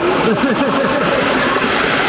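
Indistinct chatter of many people in a large echoing hall, a steady loud babble with no single voice standing out.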